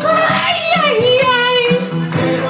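Karaoke singing over a backing track: a high voice holds a long note that slides down about halfway through and then holds again, over a steady drum beat.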